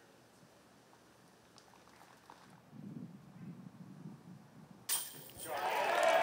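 A hushed gallery at a disc golf putt, with a faint low murmur about halfway through. Near the end a sudden sharp metallic hit, the disc striking the basket's chains, and the crowd starts to cheer as the birdie putt goes in.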